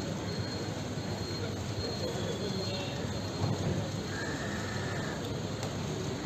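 Steady outdoor crowd noise: a dense wash of background chatter and movement from a group of people, with a faint thin whine for about a second, around four seconds in.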